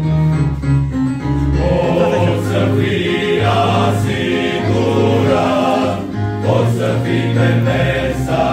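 Men's choir singing a religious song in sustained chords, the voices swelling fuller about a second and a half in.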